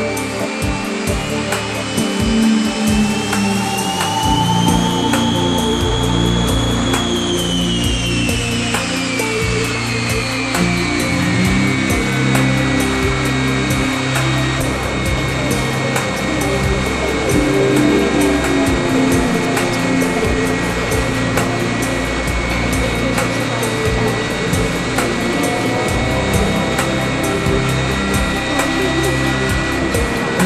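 Background rock music, instrumental, mixed with the high whine of the Shockwave jet truck's jet engines: a tone that rises over the first several seconds, falls, then holds steady.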